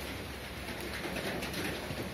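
Bird calls, dove-like cooing, over a steady background hiss.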